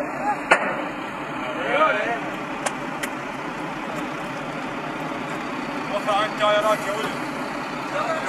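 A vehicle engine running steadily, with men's voices in short snatches about two seconds in and again near the end, and a few sharp clicks in the first few seconds.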